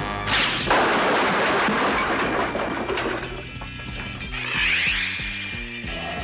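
Cartoon crash sound effect: a loud, noisy rush that starts just after the opening and lasts about three seconds. It gives way to orchestral score with a bass line stepping note by note.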